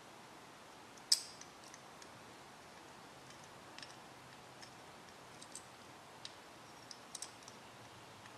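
Small metal radio parts being handled by hand: one sharp click about a second in, then scattered faint ticks and clicks as a component with wire leads is fitted.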